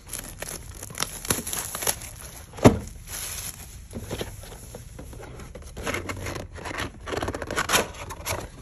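A cardboard booster box and its plastic wrapping being handled and pulled open by hand: crinkling, tearing and scraping, with one sharp snap about two and a half seconds in.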